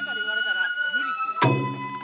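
Sawara bayashi festival music: a bamboo flute holds a high note and steps down twice, and a single loud drum stroke rings out about one and a half seconds in. People's voices waver underneath.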